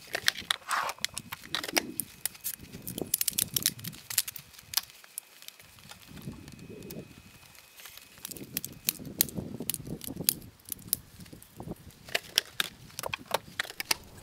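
Telescoping ladder being extended and then collapsed: rapid runs of sharp metallic clicks as its sections lock and release, thick in the first few seconds and again through the last few, with softer handling knocks between.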